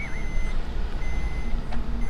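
Low rumble of a car driving, heard from inside the cabin. A wavering high tone fades out right at the start, and a couple of faint, short high beeps follow.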